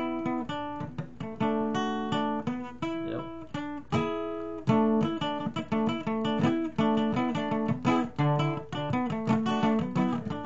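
Acoustic guitar played solo, a string of picked notes and chords that ring and fade, the picking getting quicker and denser about halfway through.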